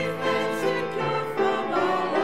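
Church choir of mixed men's and women's voices singing an anthem, moving from one held chord to the next.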